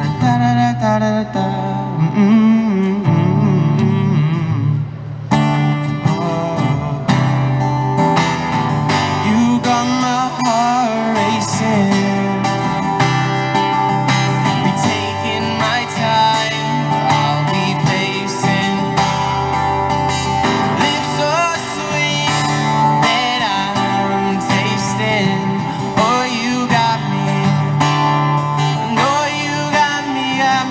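Steel-string acoustic guitar strummed with a man's voice singing a wordless melody into the microphone, standing in for a saxophone solo.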